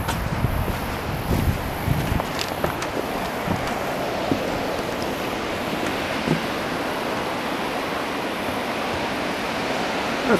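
Steady rush of ocean surf mixed with wind on the microphone, with a few low thumps of footsteps on wooden steps in the first two seconds or so.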